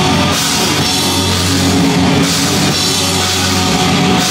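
Hardcore punk band playing live and loud: electric guitar, bass guitar and drum kit together in a fast, dense, unbroken wall of sound.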